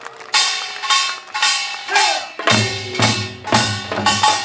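Korean pungmul percussion music: sharp ringing strikes about twice a second, with a deep drum joining on the beat about halfway through.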